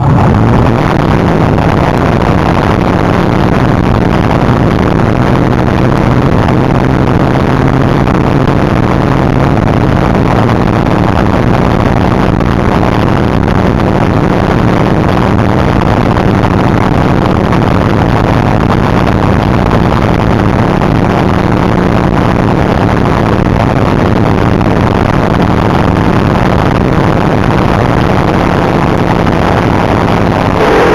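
Top Fuel dragster's supercharged nitromethane V8 firing up abruptly and then idling steadily and loud, close to the cockpit.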